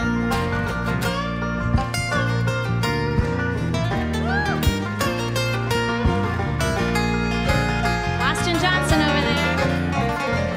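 Live country band playing an instrumental passage: banjo picking over acoustic guitars, keyboard and bass, with a steady beat. A few notes bend up and back down, about four seconds in and again near the end.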